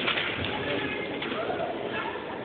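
A few sharp clacks of wooden drill rifles being handled and grounded on a hardwood gym floor as a drill platoon comes to attention, the loudest right at the start and another just past a second in, over a low murmur of voices.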